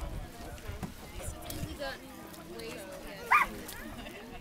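A single short, loud call, like an animal's, about three seconds in, over faint background voices.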